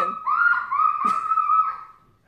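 A young child's high-pitched squealing: a quick run of about four short calls, each rising and falling, fading out near the end.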